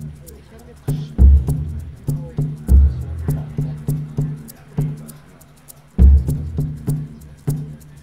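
Electronic drum composition played through loudspeakers, spelling out Morse code in rhythm: deep drum strokes for the dots and higher drum strokes for the dashes, in an uneven pattern with faint sharp ticks over it. The strokes thin out about four seconds in, then pick up loudly again about two seconds later.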